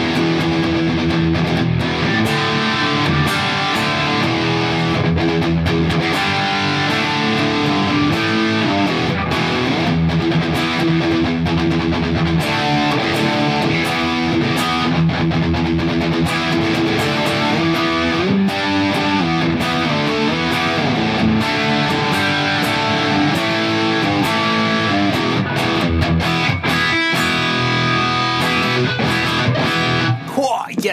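Overdriven electric guitar from a Gray Guitars Stratocaster-style guitar, played without a break through a Klon Centaur overdrive into a Marshall JCM800 and a Diezel VH4 on channel three: a heavy, driven rock tone with riffs and chords.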